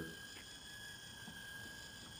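Hobby RC servo, modified to turn continuously, spinning a homemade 360-degree GoPro mount at full speed: a faint, steady high-pitched motor whine.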